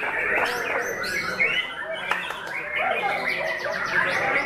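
White-rumped shama (murai batu) singing a loud, varied song of quick sweeping whistled notes, ending in a fast run of sharp clicking notes.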